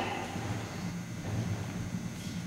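Quiet room noise in a large gymnasium with a faint steady low hum, the last of the announcer's voice echoing away at the start.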